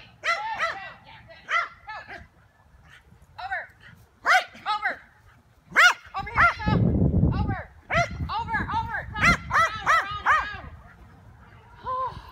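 A small dog barking in short, repeated barks that come in clusters through most of the run, as it works an agility jumps course. A low rumbling noise comes in for about a second midway.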